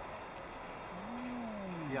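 A person's long drawn-out 'mmm' while tasting food: one hum, about a second long, that rises slightly and then slides down in pitch.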